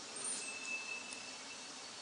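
Quiet room tone: a faint steady hiss, with a faint thin high tone heard briefly early on.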